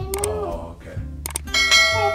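Music with bell-like chimes: two short struck dings, then a bright bell tone that rings out near the end. A child's voice glides briefly at the start.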